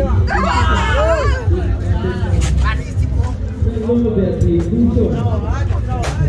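Several people talking at once over a background babble of crowd voices, with a steady low rumble underneath.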